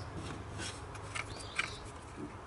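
Faint rubbing with a few light clicks: close handling noise as a hand brushes over engine parts near the belt tensioner bolt.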